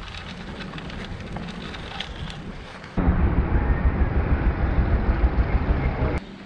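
Wind and road noise on a bike-mounted camera's microphone while riding over pavement. About three seconds in, a sudden cut brings a much louder, low, pulsing rumble, an edited-in sound, that stops abruptly.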